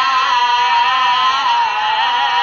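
A man's voice holding one long, wavering sung note in a chanted noha (Shia lament), the pitch sliding down slightly near the end. The sound is dull-topped, as on an old radio recording.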